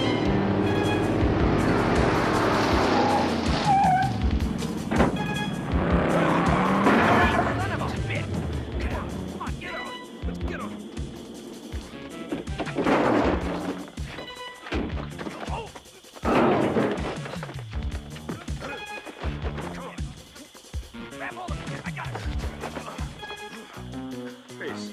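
Film soundtrack: a car's engine and tyre squeal over music through the first several seconds, with a gliding pitch, then a run of sharp knocks and thumps from a scuffle over quieter music.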